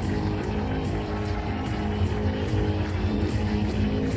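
Hard rock band playing live in an arena: distorted electric guitar, bass guitar and drums, with a steady cymbal beat of about two to three hits a second, heard through a camcorder's microphone.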